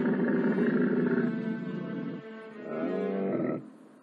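Bactrian camel bull in rut bellowing: a long groaning call that ends about two seconds in, then a shorter call whose pitch bends, about three seconds in.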